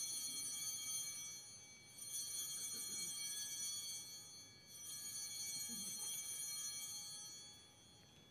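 Altar bells rung at the elevation of the chalice during the consecration: three rings about two and a half seconds apart, each high-pitched and fading over a couple of seconds.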